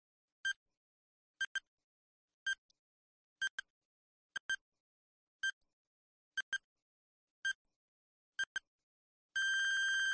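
Quiz countdown timer sound effect: short electronic pips about once a second, some of them doubled, then a long beep of almost a second near the end as the timer runs out.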